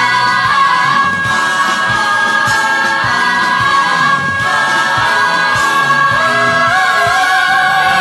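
A female musical-theatre belt holding a sustained C#5 over a backing choir and band with a regular beat.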